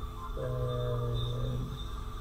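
A man's voice holding one low, steady note for about a second and a half, a hum with no words.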